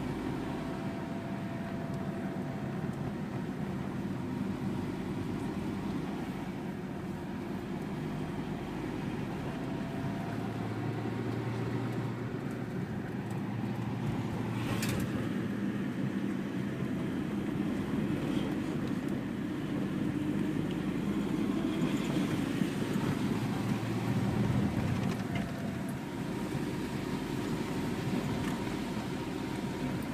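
Road noise inside a moving car's cabin: a steady low rumble of engine and tyres that swells a little in the second half. There is one sharp click about halfway through.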